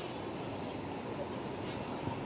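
Steady football stadium ambience: a low murmur of spectators with faint distant calls from the pitch, and a short tap near the start.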